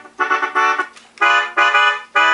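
Vintage Hohner Melodica Piano 26, a mouth-blown free-reed keyboard, playing a tune in short separate notes, about four in these two seconds.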